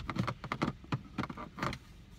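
An irregular run of about ten light clicks and knocks as CD cases are handled and put away.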